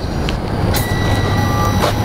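A 3D concrete printer's machinery running: a steady low hum, joined by a thin high whine under a second in, with two brief clicks.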